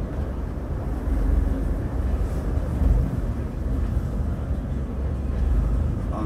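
Steady low rumble of engine and road noise heard inside the cab of a moving lorry.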